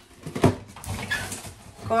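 Groceries being handled as they come out of a woven plastic shopping bag: a sharp knock about half a second in, then rustling of the bag and packaging.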